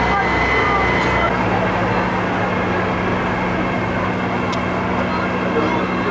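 Background chatter of voices over a steady low engine hum. A thin high tone stops about a second in.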